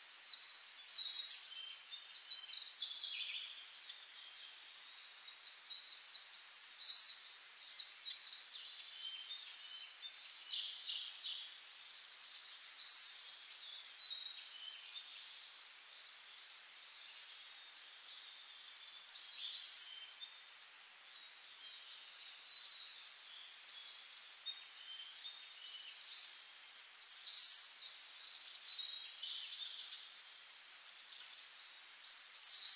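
Birds singing: a short, bright call phrase comes about every six seconds, with smaller chirps in between. A thin, steady high tone holds for a few seconds past the middle and returns faintly near the end.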